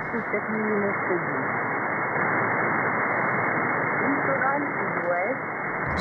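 Shortwave upper-sideband receiver audio from the Canadian Coast Guard marine weather broadcast on 2749 kHz. A faint voice reading the broadcast sits under steady static hiss, with the sound cut off above about 2 kHz.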